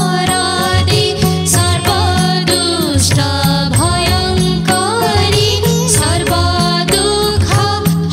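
Devotional hymn to Lakshmi sung by a woman's voice with ornamented, gliding phrases over instrumental accompaniment and a steady percussion beat.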